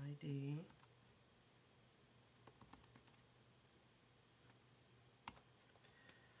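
Faint computer keyboard typing: a quick run of light key clicks around the middle and one sharper click near the end, over quiet room tone. A brief wordless sound from a man's voice opens it.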